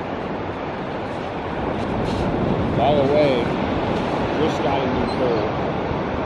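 Steady ocean surf and wind noise on a beach, with a few short wavering cries over it, first about three seconds in and again near the end.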